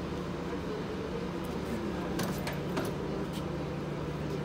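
Steady low hum of running laundromat machines, with a few sharp clicks and taps from about halfway through as buttons are pressed on a Dexter coin-op washer's control panel.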